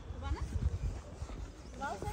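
Low, irregular thuds and rumble from walking with a hand-held phone on a dirt path, with faint voices of people in the background.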